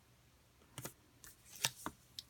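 Handling of paper and double-sided score tape: a quick run of short rustles and crackles that starts about a second in, as a folded paper hinge strip is pressed down and the tape's backing strip is pulled.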